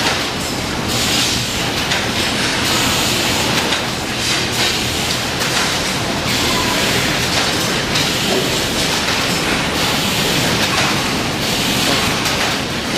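Loud, steady workshop din from mechanical presses running, with a low hum under irregular metallic clatter as steel ball-bearing slide rails are handled at the machines.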